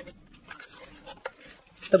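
Sheets of scrapbook paper and cardstock being handled and slid across a tabletop: faint rustles with a few light ticks.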